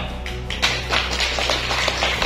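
Several people clapping, starting about half a second in, a quick irregular patter of hand claps over steady background music.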